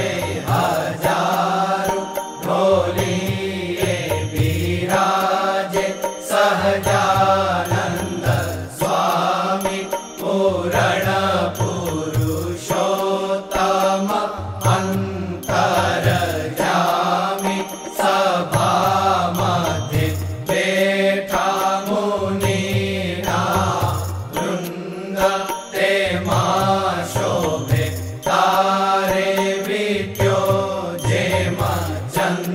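Devotional mantra chanting sung in repeated melodic phrases, with low sustained musical accompaniment under the voice.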